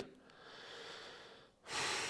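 A man breathing close to a microphone: a soft, quiet breath, then a louder, longer breath starting about a second and a half in that slowly fades away.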